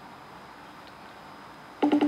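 Outgoing FaceTime call ringing on an iPhone: a quiet pause between rings, then about 1.8 seconds in the ring starts again as a fast trill of tone pulses.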